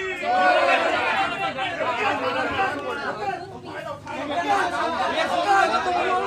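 Crowd of men talking over one another, many voices at once.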